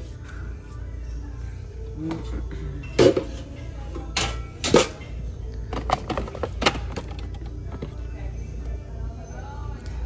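Items being handled and moved around in a plastic bin, giving several sharp knocks and clatters between about three and seven seconds in, over background music and a low steady hum. A throat-clear comes about three seconds in.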